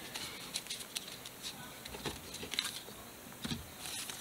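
Pokémon trading cards being gathered up and handled on a cloth-covered tabletop: faint scattered clicks and light rustles of card stock.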